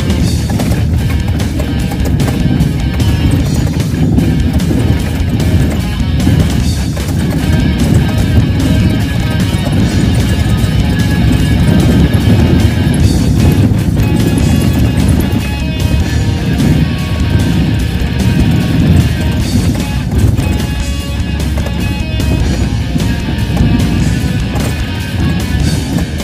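Loud background music with a heavy low end, playing steadily throughout.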